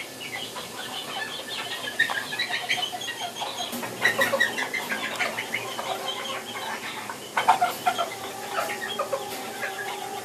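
Serama bantam chickens clucking, many short calls in quick succession, with a few louder ones about four and seven and a half seconds in.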